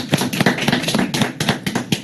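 A small group applauding: a few people clapping by hand, the claps dense and uneven, stopping near the end.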